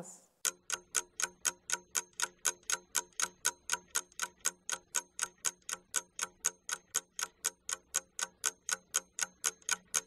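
Ticking clock sound effect, about four even ticks a second, starting about half a second in: a countdown marking the time given to answer a task.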